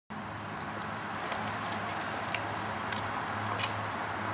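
Steady outdoor background noise with a faint low hum underneath and a few faint, light clicks.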